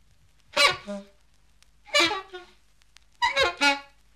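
Unaccompanied jazz horn playing three short, separate phrases, each under a second, with silence between them; the last phrase is a quick run of several notes.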